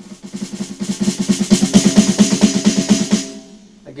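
Electronic snare drum sound from a drum module, fired by sticks on a trigger-fitted acoustic snare and played as a fast roll. The roll swells to its loudest about two seconds in, then fades and stops a little after three seconds, with a brief ring.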